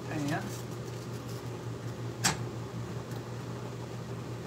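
A utensil knocks once, sharply, against a saucepan about two seconds in, over a steady low hum. A brief vocal sound comes just after the start.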